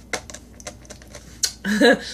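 A scatter of light, sharp clicks and taps as a cardboard greeting card is handled and put down. Near the end comes a short burst of voice, louder than the clicks.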